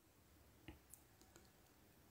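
Near silence in a pause between spoken phrases, with a faint click about two-thirds of a second in and a few fainter ticks just after.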